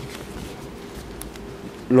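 A steady low buzzing hum with a faint steady tone above it, picked up through a courtroom's microphone feed. A man starts speaking right at the end.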